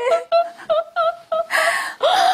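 A woman sobbing in short, broken cries, about five in quick succession, ending in a longer breathy sob near the end.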